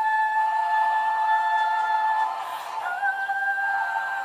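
A woman singing a long, high, wordless held note. It breaks off about two and a half seconds in, and she takes up another held note slightly lower.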